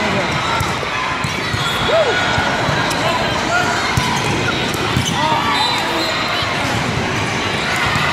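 Volleyballs being struck and bouncing in a large, echoing sports hall with many courts in play, many short hits overlapping, over a steady din of players' and spectators' voices.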